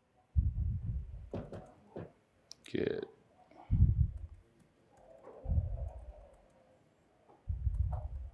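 Computer keyboard typing: scattered key clicks as a terminal command is typed, with a spoken "dash" about three seconds in. Four dull low thuds on the microphone are the loudest sounds.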